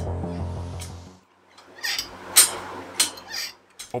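Background music fades out, then the jaws of a bench shrinker-stretcher give three or four sharp metallic clacks about half a second apart as they bite a brass strip, the loudest about midway.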